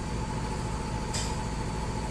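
Steady machine-shop machinery hum with a faint whine, and a single short metallic click about a second in, as of a wrench on the fixture's adjuster.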